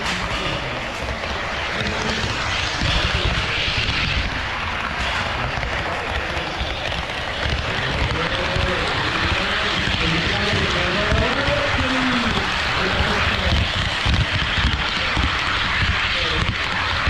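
Running noise of an HO scale model train on KATO Unitrack, heard from a camera riding on it: a steady rumble of wheels on the rails with dense, rapid rattling clicks.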